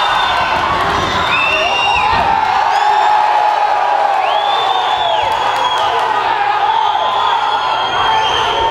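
Cage-side crowd shouting and cheering at a fight takedown, many voices at once, with a couple of long, high shouts standing out about a second and a half in and again near the middle.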